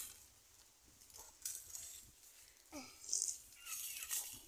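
Quiet sounds of eating a juicy cashew apple: biting, chewing and a brief slurp, with a couple of faint short murmurs.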